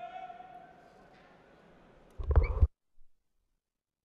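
Arena sound during a judo bout: a drawn-out, high-pitched voice-like call that fades out within the first second. Then, about two and a half seconds in, a short, very loud burst that stops abruptly, after which the audio cuts to dead silence.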